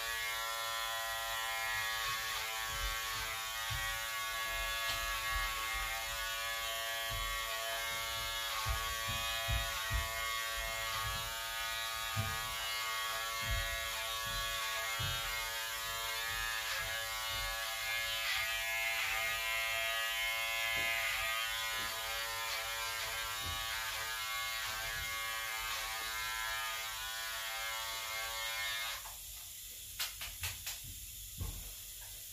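Electric hair clipper buzzing steadily as it cuts a boy's hair, with scattered low bumps from handling. It is switched off near the end.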